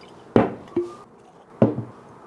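A small glass tasting glass set down on a wooden table, knocking twice about a second and a quarter apart, with a brief ring after each knock.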